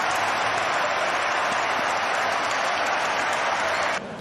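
Football stadium crowd cheering and applauding a goal just scored: a steady, dense roar of many voices and hands with no single voice standing out.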